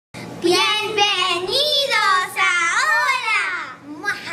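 Two children's high voices calling out together in long, drawn-out, sing-song phrases with sweeping pitch.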